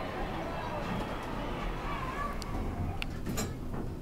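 Elevator doors sliding shut, with a few sharp clicks and knocks about three seconds in, over a steady murmur of background voices.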